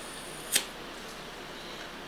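A single short, sharp click about half a second in, then quiet room tone.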